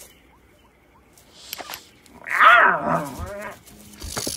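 A cartoon character's animal-like vocal cry with a wavering pitch, lasting about a second, starting just past the middle, after a short click.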